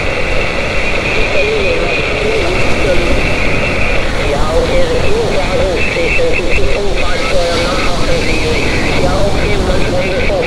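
A distant station's voice coming in over 17-meter SSB through the Xiegu G90 transceiver's speaker, heard through steady band noise.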